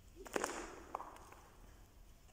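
Badminton racket swung and striking a shuttlecock: a sharp crack about a third of a second in, echoing briefly in the hall, followed by a lighter tap about half a second later.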